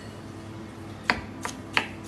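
A knife slicing red bell peppers on a plastic cutting board. About a second in there are three sharp knocks of the blade striking the board through the pepper.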